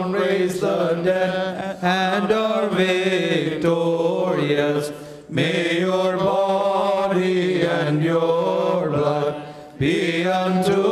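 Clergy chanting a liturgical funeral hymn in long, melodic sung phrases, with a short break about five seconds in and another near the end.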